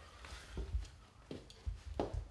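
A few faint knocks and low bumps of a person getting up and stepping across a concrete floor.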